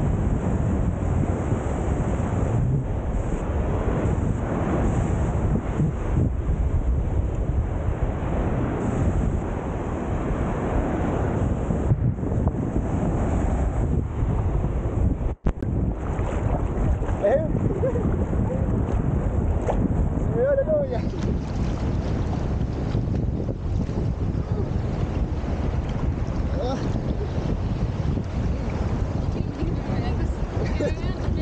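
Steady wind rumbling on the camera microphone over the wash of small ocean waves breaking and swirling in the shallows, with a brief dropout about halfway.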